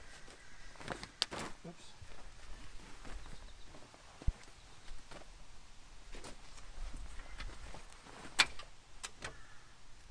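Handling of a heavy oilskin coat and its liner: faint rustling of the fabric with a few scattered sharp clicks and knocks, the loudest a little before the end.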